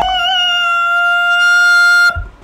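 A man singing one high note and holding it steady for about two seconds, with a slight waver as it starts: a demonstration of the top of the alto range that a singer can reach.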